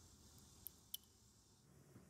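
Near silence, with two faint short clicks, about two-thirds of a second in and again about a second in.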